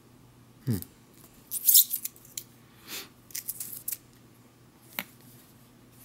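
Crisp handling noises from a small metal food can being turned over in the hands: short scattered rustles and clicks, loudest about two seconds in, with a sharp click near five seconds.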